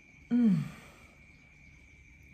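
A woman's short sigh-like vocal sound, its pitch sliding downward, about a third of a second in, followed by a pause. A faint steady high-pitched tone runs underneath.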